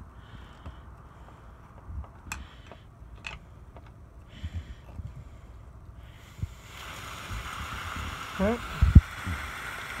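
Pressure-release valve on a 20-inch whole-house filter housing, pressed with a screwdriver to burp out trapped air. A couple of light clicks come first. About seven seconds in, a steady hiss starts as air and then water spurt out.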